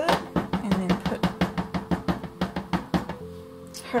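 A rubber stamp being inked by patting a Distress ink pad onto it: a fast, even run of light taps, about five or six a second, that stop about three seconds in. Background music plays throughout.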